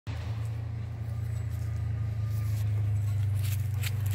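A motor running steadily with a low, even hum, a few faint clicks near the end.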